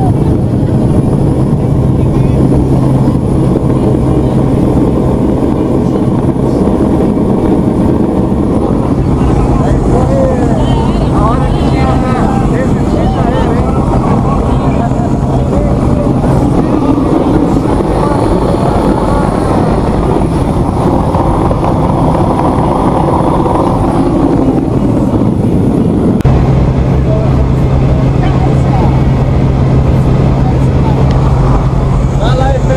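Steady drone of a small high-wing jump plane's engine and propeller, heard from inside the cabin as it runs at power through takeoff and climb. Raised voices carry over it in the middle stretch, and the sound changes abruptly about 26 seconds in.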